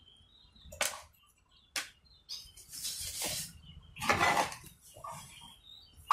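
Faint bird chirps in the background, with a few short rustling and scraping noises from a small circuit board being handled and turned over.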